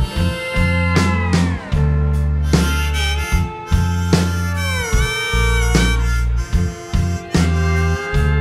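Harmonica solo over a live band, with notes bent downward twice, about a second in and again about five seconds in, over electric guitar and a low, stepping bass line.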